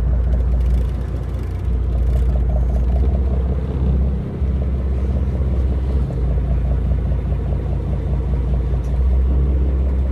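Boat engine running steadily, a continuous low drone.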